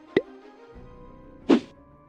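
Outro logo sting: two short pops about a second and a half apart over faint held tones.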